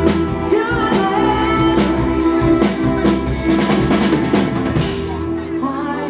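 Live band playing: electric guitar, bass guitar, keyboard and drum kit, with a woman singing. Near the end the drums and the bass drop out, leaving the keyboard and voice.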